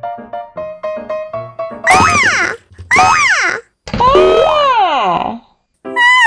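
Light children's background music of short plucked notes, then a high-pitched cartoon character voice giving three rising-and-falling cries, the last one long and sliding down.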